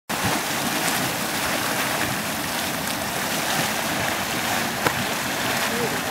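Boiling mud pool of Yellowstone's Mud Volcano, churning and venting steam: a steady hiss with low, irregular gurgling underneath. A single sharp click comes near the end.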